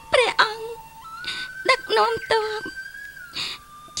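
A woman speaking tearfully, crying as she pleads, in short broken phrases. Background music holds a long steady note underneath.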